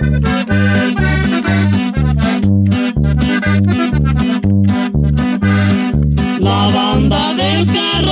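Norteño corrido instrumental passage: accordion carrying the melody over a plucked-string bass line in a steady two-beat rhythm, about two bass notes a second, with no singing. A livelier accordion run comes in near the end.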